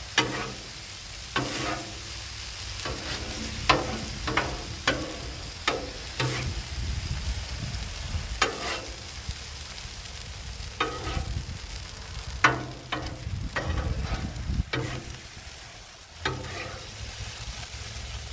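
Apples sizzling gently on a Blackstone steel flat-top griddle over medium-low heat, while a metal spatula scrapes and taps the griddle top, turning and folding them over, in irregular strokes every second or so.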